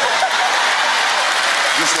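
Audience applauding, a steady clapping that runs on under the preacher's next words.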